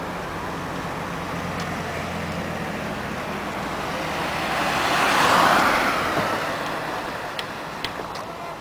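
Engine hum and road noise of a moving taxi heard from inside the car, with a passing vehicle's noise swelling to a peak about five seconds in and fading away.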